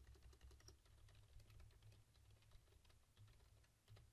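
Faint typing on a computer keyboard: a quick, uneven run of key clicks that thins out near the end.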